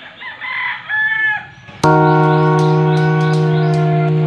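A rooster crowing once, then, a little under two seconds in, music cuts in suddenly: a held chord with light percussion ticks over it.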